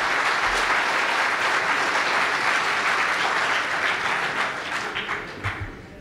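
Audience applauding steadily, then thinning out and fading over the last second or two.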